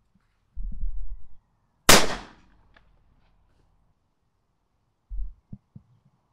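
A single shotgun shot about two seconds in, a sharp crack that dies away within half a second. Brief low rumbles before and after it.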